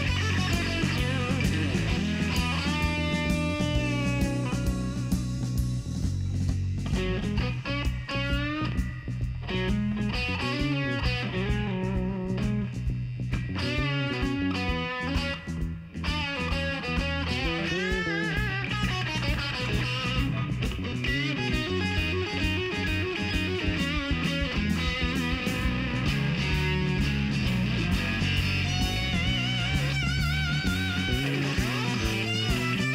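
Live blues-rock band playing an instrumental passage: a lead electric guitar plays bent, wavering notes over bass guitar and a drum kit with cymbals.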